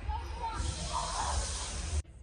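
A group of students hissing together, a steady "sss" that starts about half a second in and is cut off abruptly at the end, with faint voices underneath.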